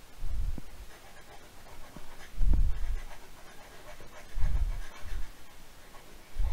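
Breaths blowing onto a close microphone: a soft, low puff about every two seconds.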